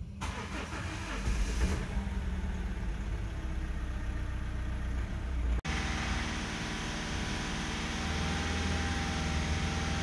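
Mazda 2.2 Skyactiv-D diesel engine cranking on the starter motor, turning over fast with the battery boosted by a high-current charger. It is a hard start, cranking as if there is little compression, which traces to damaged hydraulic lash adjusters. After a sudden break a little over halfway through, the engine is heard running steadily.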